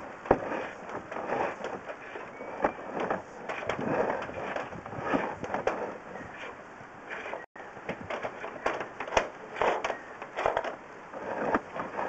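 Drain inspection camera and its push rod being pulled back through the pipe: an irregular run of clicks, knocks and scraping with no steady rhythm.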